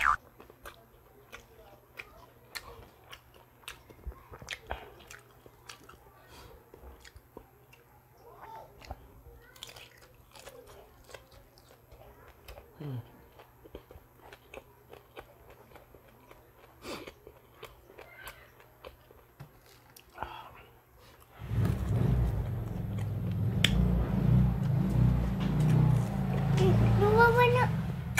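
Close-miked chewing and biting of crisp fried okoy (shrimp and carrot fritters), a quiet run of many small crunches and mouth clicks. About 21 seconds in, a much louder low rumbling sound sets in and covers the chewing.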